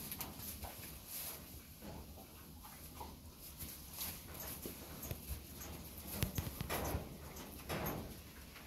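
Grey Mangalitsa pig rooting and feeding among dry leaves and grain: a run of irregular short snuffling, crunching and rustling noises, loudest about three-quarters of the way through and again near the end.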